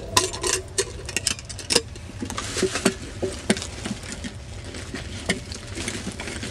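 Handling noise of a metal canister and its lid: scattered short clicks and knocks, with some rustling as it is pushed into a nylon duffel bag.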